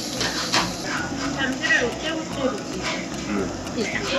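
Restaurant din: voices chattering, broken by several short clicks and clinks of metal tongs and tableware.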